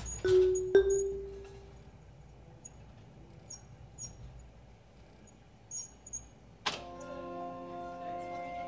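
Robotic mallet instrument striking two pitched notes in the first second that ring and fade, followed by a quiet stretch with faint small clicks. Near the end a sharp strike starts several tones that ring on together.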